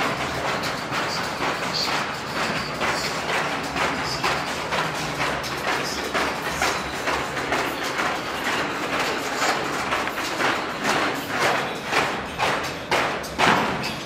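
Heavy battle ropes slapping down on a padded gym floor in a fast, even rhythm of about two to three slams a second. The slams grow louder toward the end, the last one is the loudest, and then they stop.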